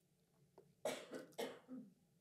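A man's soft, short coughs: a quick run of about four starting about a second in.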